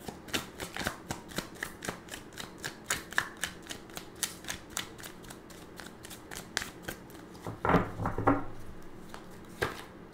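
A tarot deck being shuffled by hand: a quick run of light card clicks, several a second, then a couple of louder knocks about eight seconds in as the cards are handled more firmly.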